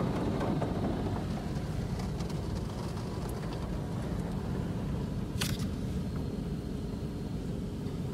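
Automatic car wash running, heard from inside the car's cabin as a steady low rumble, with a single sharp click about five and a half seconds in.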